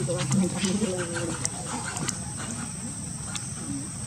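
Indistinct human voices talking in the first second or so, then outdoor ambience with a steady high-pitched insect drone and scattered small clicks.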